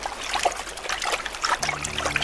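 Light splashing and trickling water of a pony swimming through the sea, many small drips and splashes. Low steady tones come in near the end.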